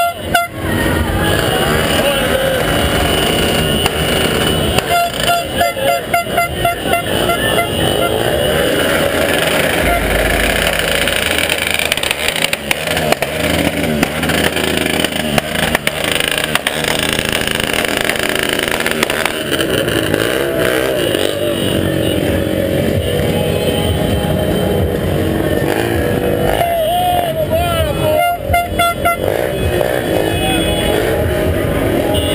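Street parade traffic of cars and motorcycles: engines running, with horns sounding in repeated short toots near the start, a few seconds in and near the end, and people shouting over the din.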